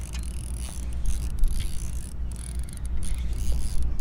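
Baitcasting reel being wound steadily against a hooked fish, a small redfish, under a steady low rumble.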